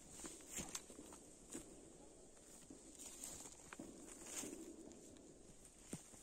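Faint, irregular footsteps rustling and crunching through moss, fallen leaves and low undergrowth on a forest floor.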